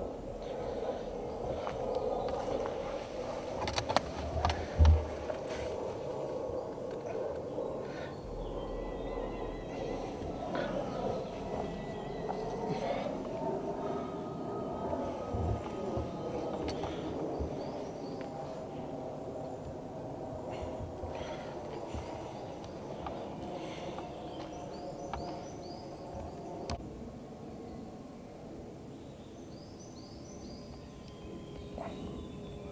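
Quiet outdoor woodland ambience: a steady low background hum with a few faint bird chirps. A couple of short dull thumps come about four to five seconds in.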